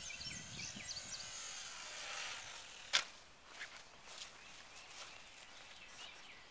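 Faint outdoor ambience with a few short bird chirps in the first second and a half, then a sharp click about three seconds in, followed by a few fainter clicks.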